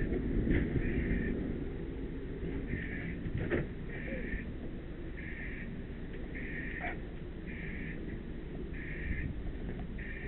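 Fire hose nozzle spraying water, a steady rush, under a high electronic alarm beep repeating about once a second.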